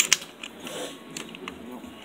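Semi-automatic pistol's slide let go from the slide release: two sharp metallic clacks in quick succession right at the start, followed by a few faint clicks of the gun being handled.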